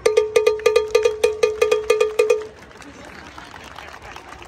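A hand-held cowbell struck with a stick in a fast samba rhythm, with bright ringing strikes that stop about two and a half seconds in. Crowd chatter follows.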